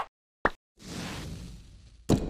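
Sound effects for an animated title card: two short sharp hits about half a second apart, then a whoosh that swells quickly and fades away.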